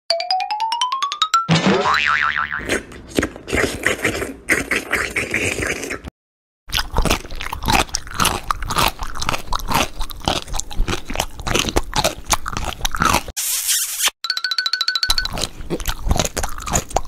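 A short rising whistle-like sound effect opens, then close-miked crunching and biting of crunchy food in quick, rapid strokes, broken by a brief silence about six seconds in and resuming just as densely. Near the end a short steady tone sounds.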